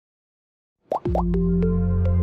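Animated logo jingle: about a second in, two quick rising pops, followed by a held deep bass note with short plucked synth notes over it.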